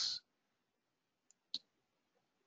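A single sharp computer mouse click about a second and a half in, with a fainter tick just before it, against near silence.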